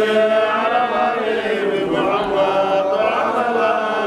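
A group of men chanting together in unison, with long, drawn-out notes.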